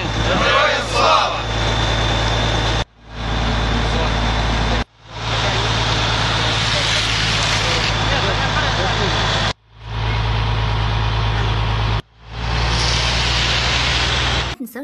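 A vehicle engine running steadily with a heavy low rumble under a loud hiss. It breaks off abruptly four times, about three, five, nine and a half and twelve seconds in, and fades back in each time.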